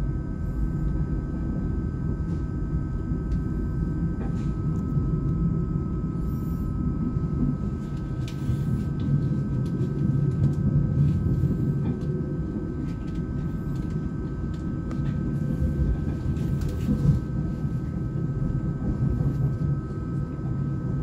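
Interior rumble of an ÖBB Cityjet double-deck passenger train running at speed on the rails, heard inside the passenger compartment. Under the steady rumble sit a faint steady whine and a few brief high hisses in the middle stretch.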